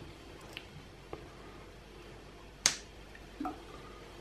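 Faint kitchen handling sounds of a small plastic lemon-juice bottle being picked up: a few light taps, one sharp click about two and a half seconds in, and a duller knock shortly after.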